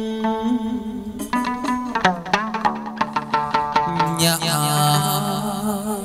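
Hát văn (chầu văn) ritual music playing: plucked string notes in the first half, then a wavering, vibrato melody line from about four seconds in.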